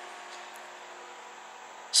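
Quiet, steady hum with a faint hiss: the background room tone of a workshop, with no distinct event.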